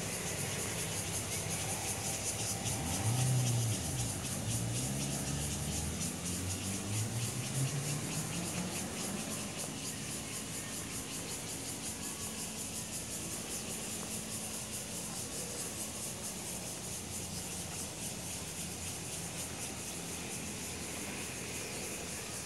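A steady high-pitched hiss in the background. Between about three and nine seconds in, a motor vehicle's engine passes, its low pitch rising as it speeds up.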